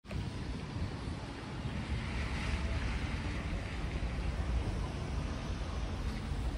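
Steady low rumble of wind on a handheld phone microphone outdoors, with a constant background hiss and no distinct events.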